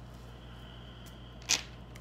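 Tarot cards being handled, with one short sharp swish of cards about one and a half seconds in, over a steady low electrical hum.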